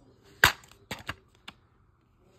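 Plastic DVD case snapping open with one sharp click about half a second in, followed by a few lighter clicks as the case is opened out.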